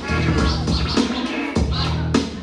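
Vinyl record scratched back and forth by hand on a DJ turntable, giving quick rising and falling sweeps over a hip hop beat with a deep bass line that drops out briefly past the middle.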